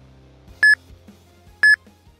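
Electronic countdown timer beeping through the last seconds of an exercise interval: two short, identical high beeps a second apart.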